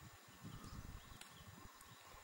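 Near silence: faint outdoor ambience with irregular low rumbles and a single short click a little after a second in.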